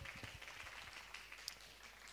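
Faint, scattered hand clapping in a pause between speakers.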